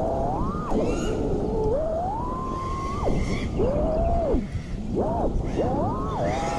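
The four brushless motors (Axis Flying Black Bird V3, 1975 kV) of a 5-inch FPV quadcopter whining as they spin, the pitch climbing and falling with the throttle over a steady rush of air noise. There is a long climb to a high, held tone about two to three seconds in. Near the end the whine drops almost away as the throttle is cut, then punches quickly back up.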